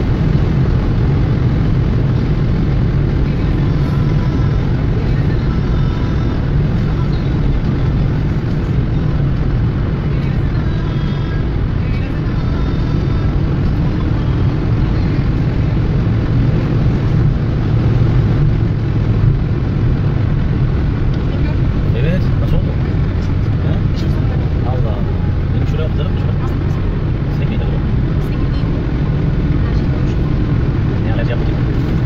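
Steady road and engine noise heard from inside a car cruising at highway speed, a constant low rumble with no change in pace.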